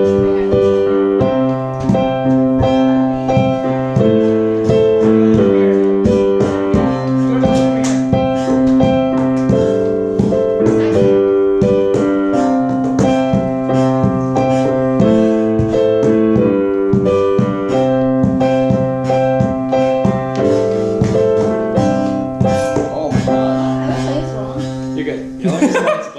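Digital piano playing a steady run of held chords that change about once a second, stopping just before the end.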